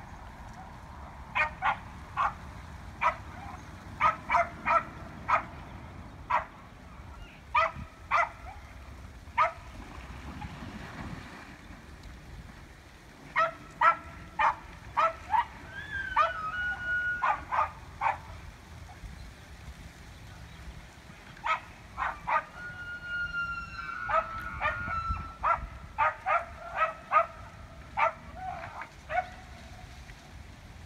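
Rutting elk: bouts of short, sharp clacks and yips, with a few drawn-out, high whistling calls that fall and level off around the middle and again later.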